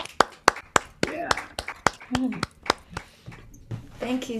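Hand clapping, about three to four claps a second, with short whoops and laughter between the claps.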